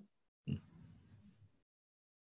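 A brief, nasal 'mm-hmm' from a person acknowledging the explanation, then near silence.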